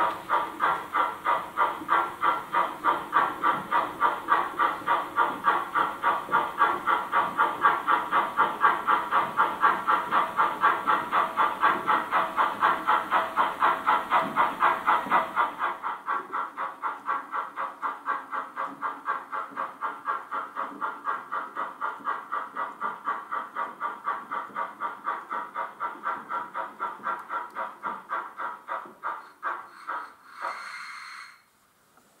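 An H0 model steam locomotive's chuffing sound, steady and rhythmic at about three chuffs a second, a little softer from about halfway through.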